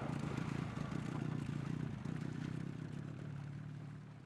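Boat engine running steadily with a low hum over a constant hiss.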